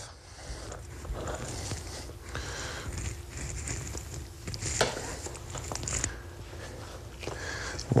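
Fleshing knife scraping meat and membrane off a fox pelt on a wooden fleshing beam, in irregular strokes, with a couple of sharper scrapes about five and six seconds in.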